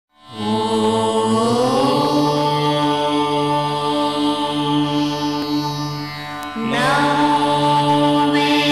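Indian devotional intro music of long held, chant-like notes over a drone. It fades in at the start, slides up in pitch about a second and a half in, and dips briefly before a new phrase begins near the end.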